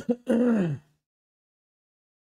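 A man clearing his throat: a short catch, then a voiced sound falling in pitch, all within about the first second.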